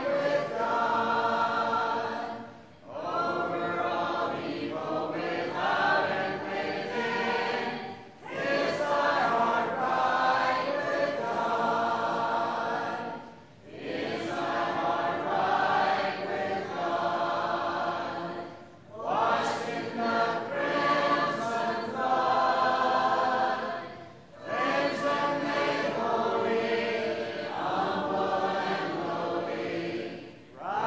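Church congregation singing a hymn a cappella, with no instruments. The singing comes in phrases of about five seconds, with a short break for breath between each.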